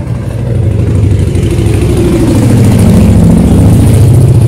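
A motor vehicle's engine running close by, loud and low-pitched, growing louder over the first second and then holding steady.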